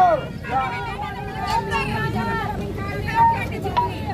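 A protest crowd shouting and calling out, many voices overlapping over a steady rumble of crowd noise.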